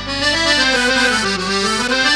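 Piano accordion playing an instrumental in the old Hindustani film-orchestra style: a run of notes stepping down and then climbing back up over steady held bass tones.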